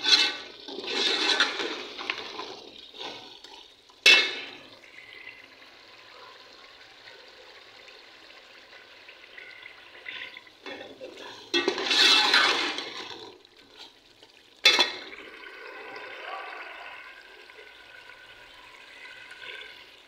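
Mutton curry frying in an aluminium pot as a steel ladle stirs it: bursts of sizzling and scraping as the meat is turned, over a low steady sizzle. The ladle clanks sharply against the pot twice, about four seconds in and again near fifteen seconds.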